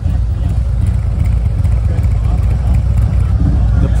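Harley-Davidson Electra Glide Standard's Milwaukee-Eight V-twin engine running steadily at low riding speed, a deep continuous rumble.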